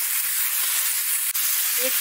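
Pointed gourd (parwal) pieces with tomatoes and spice masala sizzling steadily in hot oil in a metal kadhai as they are fried down.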